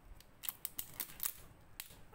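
Clear plastic shrink seal being peeled and torn off the metal cap of a glass drink bottle: a string of sharp, irregular crackles and snaps.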